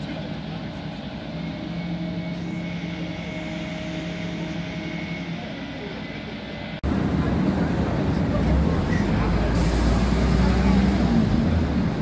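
Turntable-ladder fire truck's diesel engine running steadily, with a faint high steady whine over its hum. About seven seconds in, the sound cuts abruptly to a louder, deeper engine rumble mixed with street noise.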